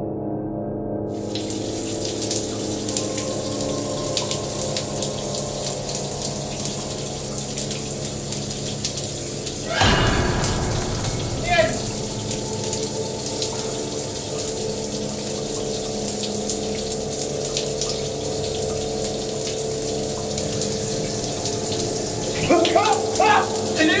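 A shower running steadily, its spray starting about a second in, over a sustained low music drone. About ten seconds in comes one loud sudden hit, and near the end a man cries out several times.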